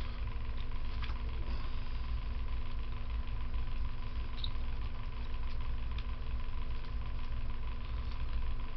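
Steady low hum and rumble of an electric box fan running, with a couple of faint ticks.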